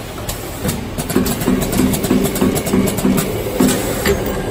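Automatic pick-fill-seal pouch packing machine running: steady mechanical noise with sharp clicks and knocks from its moving parts, and, from about a second in, a low hum pulsing about four times a second.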